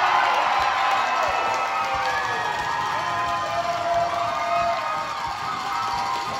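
Room full of students cheering and shouting, many voices overlapping, easing off slightly toward the end.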